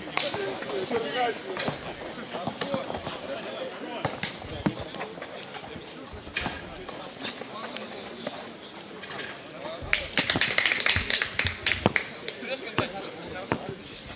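Background voices with scattered sharp knocks of a basketball bouncing during a streetball game. About ten seconds in comes a two-second burst of rapid sharp clicks.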